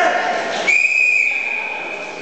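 A referee's whistle blown in one long, steady blast starting just under a second in, stopping the wrestling action. Before it, a voice shouts briefly.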